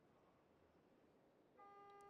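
Near silence, then about one and a half seconds in a single steady electronic beep starts and holds to the end.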